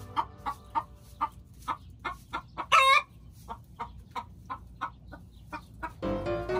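Chickens clucking: a steady run of short calls, about three a second, with one louder, longer squawk a little before the middle.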